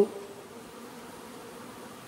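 Many honeybees buzzing quietly and steadily at a window.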